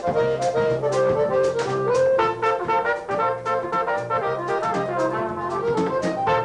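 Live jazz: a flugelhorn plays a melody over accordion accompaniment, with a steady cymbal beat underneath. One note bends about two seconds in.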